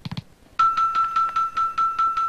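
Game-show electronic sound effect: a rapid run of chimes, about five a second, over a steady held tone, starting about half a second in, as a new board's numbers are filled in with covered balls.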